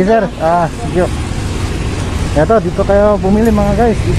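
A person's voice in two short phrases, the first at the start and the second, longer and drawn out, in the second half, over low background noise.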